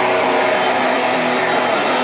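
Hardcore punk band playing live through a PA, loud distorted electric guitars holding a steady drone. There are no cymbal crashes in this stretch.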